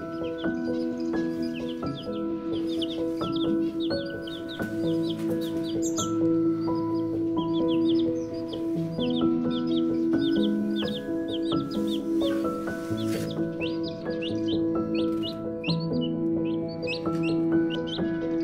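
Young chicks peeping over and over, short high falling peeps several times a second, over background music of slow, sustained chords.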